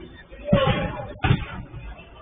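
A football struck twice, about a second apart: two loud thuds.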